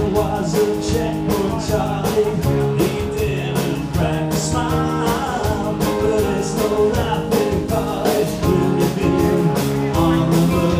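Live rock band playing a song: electric guitar, keyboard and a steady drum beat, with a man singing into a microphone through the PA, heard in the room.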